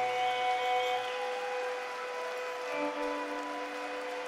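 Live instrumental outro of slow held notes from violin and guitar over a drone, with no singing. A low note drops out about a second in and a new lower note comes in near the end.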